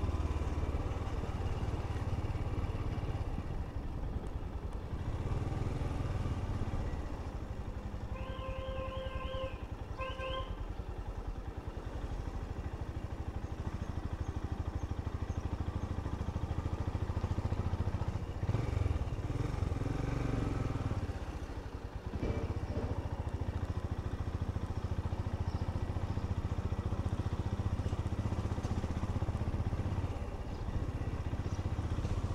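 Royal Enfield Himalayan's single-cylinder engine running at low speed through town, its note rising twice as it pulls on. About eight seconds in, a short high warbling tone sounds for about two seconds.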